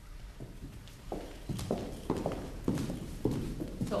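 Shoes stepping on a hard floor: a string of about eight separate knocks starting about a second in.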